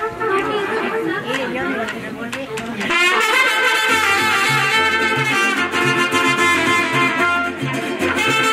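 People chatting, then about three seconds in band music starts suddenly and louder: a brass melody over guitar and a stepping bass line.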